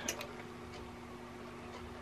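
Two or three light clicks from handling an embroidery machine while threading it, followed by a faint steady hum.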